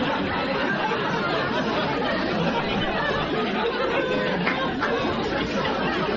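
Several people talking over one another at once, indistinct chatter with no single clear voice.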